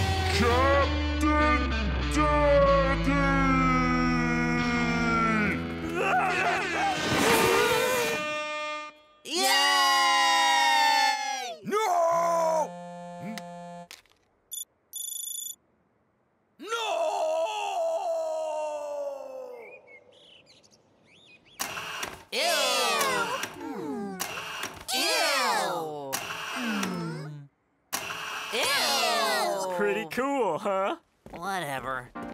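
Animated cartoon soundtrack: wordless character voices and music, with a brief electronic alert tone about halfway through.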